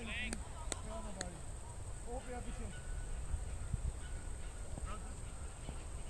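Faint, distant voices of cricketers calling on the field over a steady low wind rumble on the microphone, with a few sharp clicks in the first second and a half.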